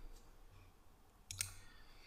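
Two faint computer mouse clicks about a second and a half in, against quiet room tone.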